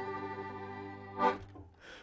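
The final held chord of a fiddle and banjo tune ringing out and fading away over about a second, followed by a brief vocal sound.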